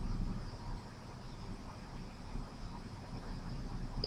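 Faint, steady sizzling of sliced shallots frying in oil in a non-stick pan.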